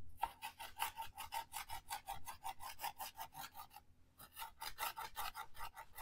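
Ulu knife rocked quickly through onion on a cutting board, mincing it fine: an even run of short chopping strokes, about six a second, with a brief pause about four seconds in.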